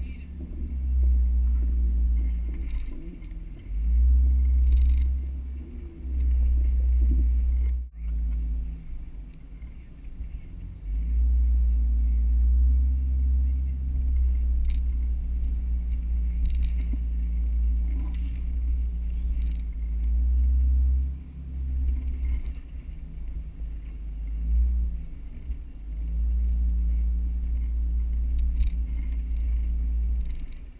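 Mercedes-Benz G320 engine running at low speed during slow rock crawling, with a deep rumble that swells and eases several times. Occasional short clicks and knocks sound over it.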